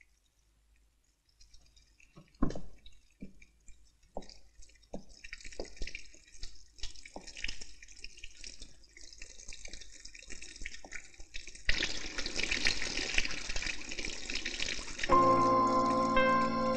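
Water dripping in separate drops after a quiet start, building to a thin trickle, then turning into a full, steady running of water about twelve seconds in. Music with sustained tones comes in near the end.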